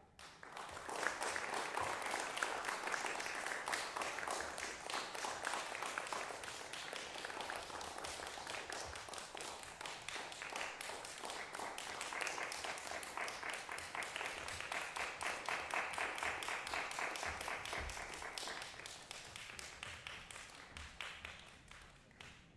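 Audience applauding, starting at once and dying away over the last few seconds.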